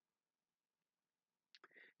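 Near silence: a pause in a woman's talk, with her voice starting again near the end.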